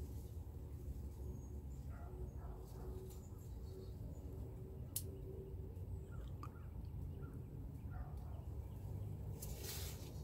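Faint garden ambience: a steady low rumble with a few faint bird chirps, a single sharp click about halfway through, and a short rustle of leaves near the end while shiso leaves are being picked by hand.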